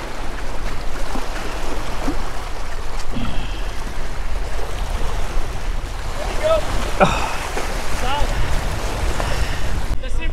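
Surf washing and splashing against the boulders of a rock jetty, a continuous rushing wash.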